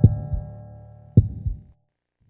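A heartbeat sound effect: two double thumps (lub-dub) about a second apart, over a low held music chord that fades away.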